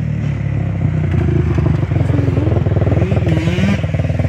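Kawasaki KFX400 quad's single-cylinder four-stroke engine running hard as it rides by on a dirt track. Its pitch rises in short pulls a couple of times in the second half.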